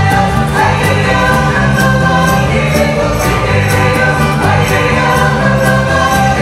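A folk band playing live: voices singing a folk song with bowed fiddle, accordion and a steady percussive beat.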